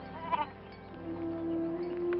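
A goat bleats once, briefly, a quarter of a second in, over background music that holds a long steady note from about a second in.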